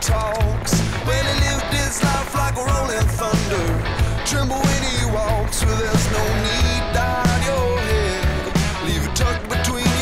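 Background rock music with a steady beat and a melody line.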